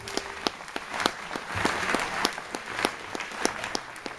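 Theatre audience applauding at the end of a song, a last held note of the accompaniment dying away in the first half second.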